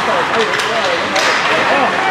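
A commentator talking over steady ice-arena noise, with a couple of sharp clacks of sticks and puck from the play, about half a second and a second in.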